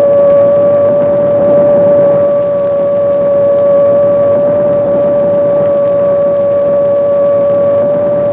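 AN/PPS-5 ground-surveillance radar's audio target signal, as heard in the operator's headphones: a loud, steady tone with a fainter overtone over a rough hiss. It is the characteristic sound of a moving jeep, with the range gate set on the target for the loudest signal.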